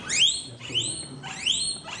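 A guinea pig squealing while held in the hand: about four high calls in a row, each sweeping up in pitch and then holding. It is protesting, not in pain.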